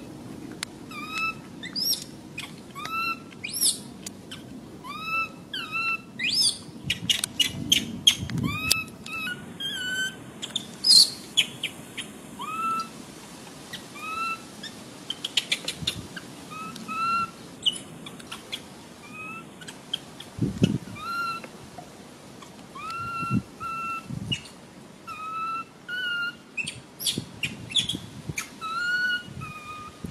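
Infant macaque crying: a short squeal that rises and then levels off, repeated about once a second, with scattered sharp clicks in between.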